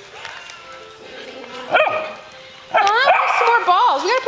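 A dog barks once, sharply, a little under two seconds in, over the low hubbub of a group of dogs playing. A woman's voice takes over in the last second or so.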